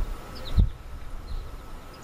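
Outdoor ambience: a few faint, short bird chirps over a low rumble, which swells briefly at the start and again just over half a second in.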